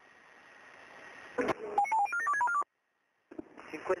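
Two-way radio transmission: a hiss swells, then a click and a rapid string of short electronic beeps at changing pitches, about a second long, typical of a radio's selective-call tone signalling as a channel opens.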